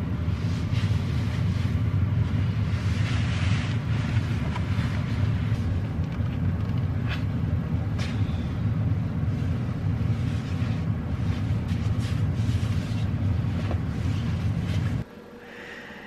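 A steady low rumble with faint scattered clicks over it; it cuts off suddenly near the end.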